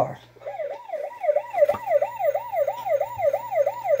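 Tonka Real Tough Rescue Force toy police car's electronic siren sound, set off from its button while still in the box: a quick rising-and-falling wail repeating about three times a second, starting about half a second in.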